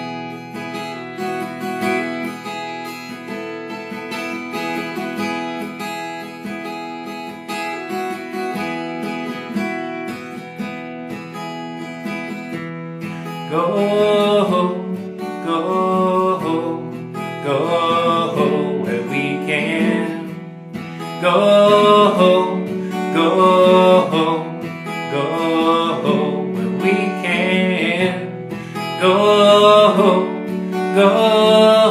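Acoustic guitar played solo, with chords ringing on steadily. About halfway through, a man's singing voice comes in over the guitar, and the music gets louder.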